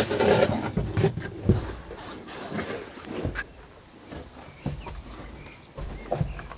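Rustling and scraping of clothing and a backpack against sandstone as a person squeezes through a narrow rock crevice, with a few short knocks scattered through it. It is busiest in the first second and quieter afterwards.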